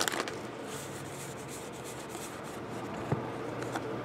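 Allen & Ginter baseball cards sliding and rubbing against each other as a stack is flipped through by hand. There is a faint click about three seconds in.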